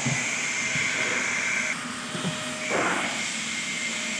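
Steady hiss with a thin high whine from a powered CNC stepper-driver controller box. The whine drops out a little before two seconds in and comes back fainter about a second later, with a short rustle of the wiring being handled.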